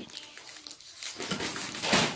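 Rustling and rubbing handling noise from a phone being moved around close to the body, with a few small clicks and a louder rustle near the end.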